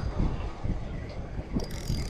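Spinning reel being cranked, its gears whirring as a hooked fish is reeled in, with a brief flurry of high clicks near the end.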